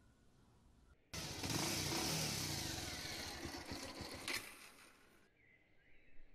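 A motor vehicle passing close by: a loud rushing noise with a low engine tone that starts abruptly about a second in, fades away, and is cut off suddenly near the end.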